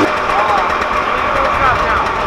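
Snowmobile engine idling steadily and loudly through an aftermarket race can exhaust, with voices over it.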